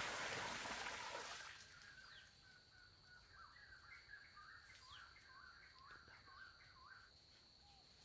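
Running water fades out in the first second and a half. A bird then calls a quick series of short chirps, about three a second, for some five seconds over a steady high insect hum.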